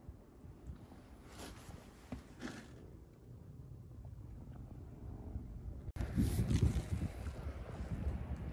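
Quiet room noise with a few faint, soft knocks in the first seconds. From about six seconds in, a louder, uneven low rumble of wind buffeting the microphone.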